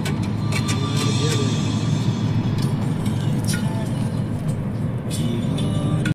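Steady road and engine rumble inside a moving car's cabin, with music playing over it.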